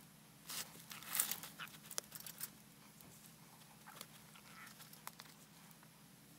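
Faint rustling and soft scratchy touches of hands handling loose faux-fur fibre and pressing fur and yarn into place, busiest in the first couple of seconds and then mostly quiet.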